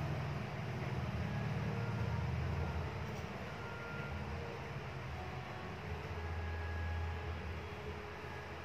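A pen writing on paper as letters are traced, over a steady low rumble of background noise.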